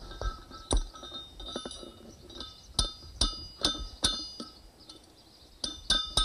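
Blacksmith's hammer striking a hot railroad spike over a fuller on the anvil. About eight blows, each with a bright metallic ring, come in an uneven run, with a pause of about a second before the last two.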